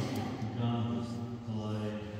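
A man's voice chanting a liturgical prayer on a near-steady low pitch, in long held syllables.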